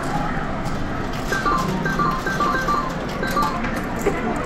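Sigma Hot Lines video slot machine playing a short run of quick electronic beeps, a jingle-like melody of high tones, over the steady din of an arcade.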